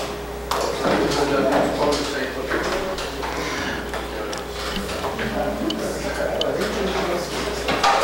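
Background chatter of several people talking at once in a large hall, indistinct, over a steady low hum, with a few light clicks.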